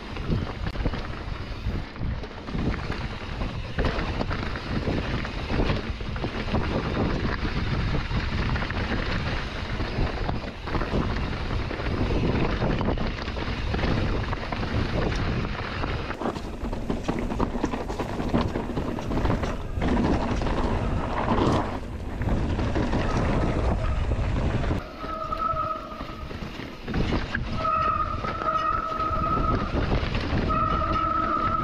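Mountain bike rolling fast over a rocky trail: tyre roar, rattling of chain and frame over stones, and wind on the helmet-mounted microphone. In the last five seconds the rolling noise eases and a high, steady squeal comes and goes three times, typical of squealing disc brakes as the rider slows.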